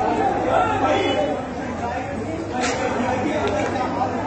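Indistinct chatter of people talking, with voices overlapping.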